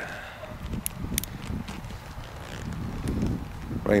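A few small, sharp metallic clicks about a second in, two of them close together, from a single-action .22 revolver (a Colt Frontier Scout) being handled and loaded, over a low steady rumble.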